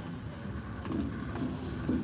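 Steady low rumble and hum of a cruise ship's interior while the ship is under way.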